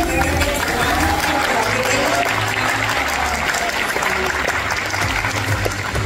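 A large audience applauding in a hall, with music playing underneath.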